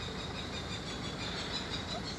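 Steady outdoor background noise with a faint, thin high tone running through it and no distinct event.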